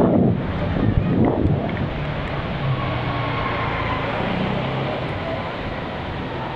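Motorcycle engine running at low speed as the bike slows and stops by the curb, under a steady rush of wind noise on the microphone.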